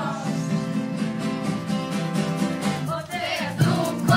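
Acoustic guitars strumming chords in an instrumental gap between sung lines of a children's song, with the children's voices coming back in near the end.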